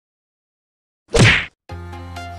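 Silence, then about a second in a single short, sharp whack-like sound effect marking a cut between on-screen cards, followed just before the end by background music starting.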